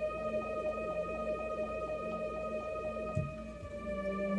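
Electronic keyboard played by two players at once: low held notes in the bass under a fast run of short repeated notes higher up, each note sliding down in pitch, with held tones above.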